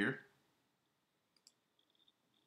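Two faint, sharp clicks close together about a second and a half in, from a computer mouse being clicked, after the end of a spoken word.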